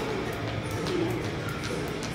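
Jump rope ticking against the floor about three to four times a second as it turns steadily under the jumper, over a steady background bed.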